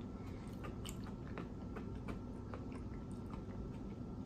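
A person chewing food with the mouth closed: faint, irregular little wet clicks over a low steady hum.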